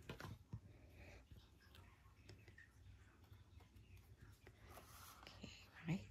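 Near silence with faint rustles and light taps of glued cardstock being handled and set in place.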